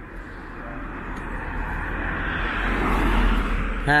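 A passing vehicle, its steady noise with a low rumble swelling gradually and loudest about three seconds in.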